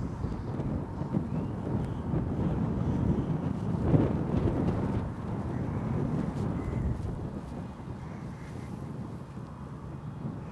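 Wind buffeting the microphone, a rough low rumble that eases toward the end, with one short louder thump about four seconds in.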